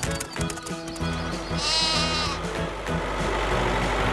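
A sheep bleating once, a single wavering call just under a second long about halfway through, over background music.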